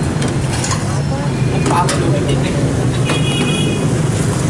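Busy street ambience: a steady low hum of motorbike traffic under background chatter, with a brief high-pitched tone about three seconds in.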